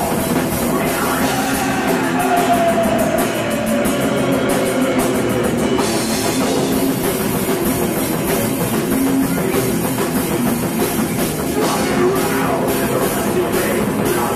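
Live rock band playing loud in a club, drum kit and electric guitars, recorded from among the audience.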